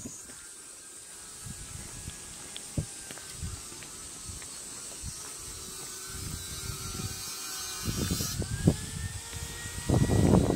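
Outdoor rural ambience with footsteps on a paved lane, a steady high-pitched hiss and a faint distant engine hum that rises slightly near the end. Wind or handling rumble on the phone microphone swells in the last couple of seconds.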